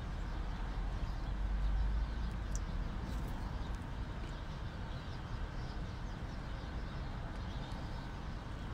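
Steady low rumble heard from inside a parked car, swelling a little about a second in, with a few faint high ticks a couple of seconds in.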